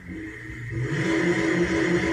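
A car engine running steadily, swelling louder about a second in.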